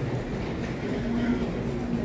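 Steady low rumble of a busy airport terminal concourse, with faint voices in the background; a low hum comes in about a second in.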